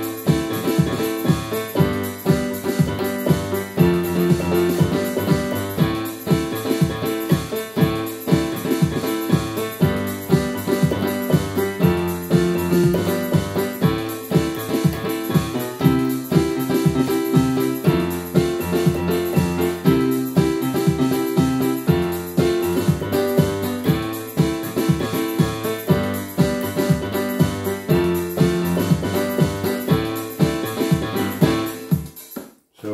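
Yamaha PSR-540 home keyboard played with both hands: a rhythmic chord pattern on the A minor, G major, F major and C major chords. The note attacks repeat steadily and the chord changes about every two seconds.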